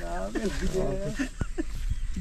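A man's voice laughing and exclaiming in a long, wavering run of sound, with a single sharp click a little past the middle.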